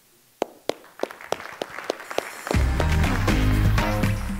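Scattered hand claps from an audience, thickening into applause, then loud walk-on music with a strong bass cuts in about two and a half seconds in over the clapping.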